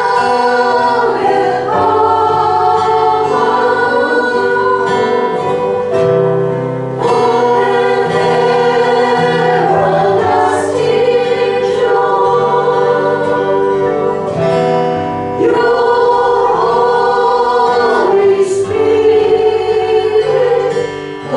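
A slow worship song sung by several voices over instrumental accompaniment, in long held phrases with short breaths between them.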